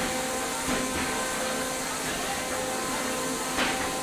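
Steady mechanical whine, several tones held at one pitch over a hiss, with a faint knock about a second in and another near the end.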